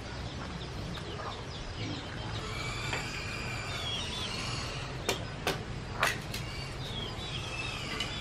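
Chickens clucking in the background, with a few sharp knocks of a knife on a wooden chopping board about five to six seconds in.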